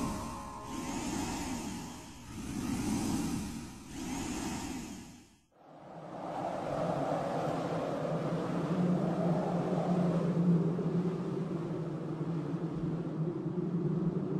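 Soundtrack sound design: three swelling whooshes, a brief cut to silence about five seconds in, then a steady rumbling drone.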